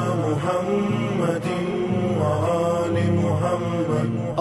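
A chanted Islamic devotional song (salawat): voices holding long notes that glide in pitch over a low, sustained musical backing.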